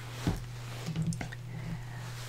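Faint handling sounds of felt craft pieces on a cutting mat: a soft knock about a quarter second in and a few light ticks around the middle, over a steady low hum.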